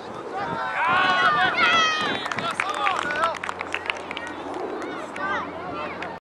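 Children shouting and calling out while playing football, loudest about a second in. Around the middle comes a quick string of short, sharp clicks.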